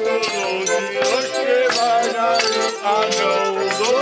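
Folk carol music played while walking: an accordion and a brass horn holding tunes over a rattling percussion beat about twice a second.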